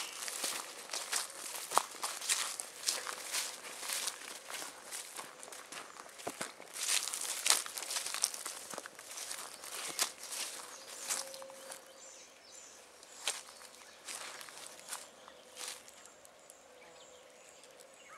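Footsteps through grass and brush, an irregular run of short crunches and rustles that thins out near the end.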